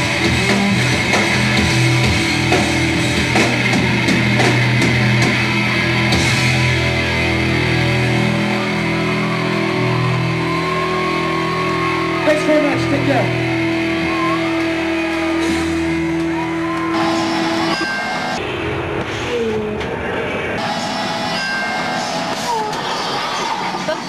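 Loud live punk rock with distorted electric guitars holding ringing chords; the sound thins and changes about eighteen seconds in.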